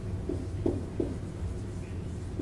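Dry-erase marker writing on a whiteboard: a run of short marker strokes, four or five in two seconds, over a steady low room hum.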